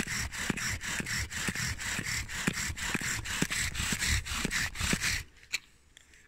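Bow drill worked hard and fast: the wooden spindle grinding in the notch of a hearth board as the bow cord is sawn back and forth, about five strokes a second. The drilling is smoking, a sign that the friction is hot enough to char the wood dust. It stops abruptly near the end.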